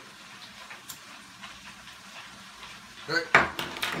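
Quiet room tone with a few faint clicks while a person holds in a hit of smoke from a hand pipe, then near the end a sharp, forceful burst of breath as the smoke is blown out.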